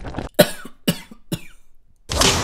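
A person coughs three times in quick succession, short sharp coughs about half a second apart.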